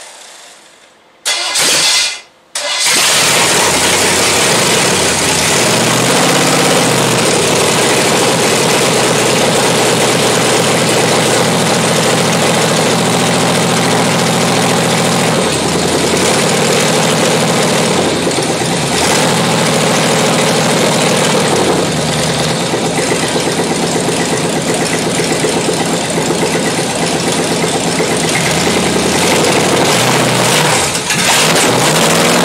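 Chevrolet small-block 350 V8 on a test stand firing up: a short burst about a second in, a brief drop, then it catches and runs loud and steady without exhaust pipes, its speed rising and falling several times as the throttle is worked.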